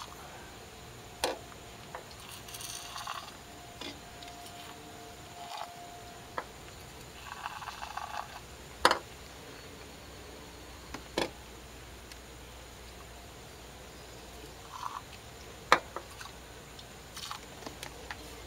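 Short hisses of an aerosol can of PB Blaster penetrating oil sprayed through its straw into the spark plug wells, soaking the threads of stuck two-piece spark plugs. Several sharp clicks come in between.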